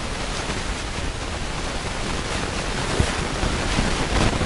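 Whiteboard eraser wiping across the board in strokes, over a steady hiss, with a light knock about three seconds in.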